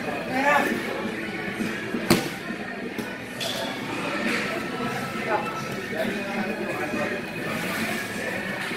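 Indistinct voices of people talking, over faint background music, with one sharp knock about two seconds in.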